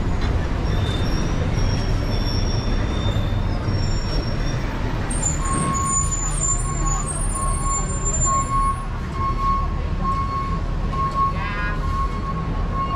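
City street traffic with a bus at the kerb: a steady low rumble, a high squeal near the middle, and a steady high tone that starts about halfway through and holds.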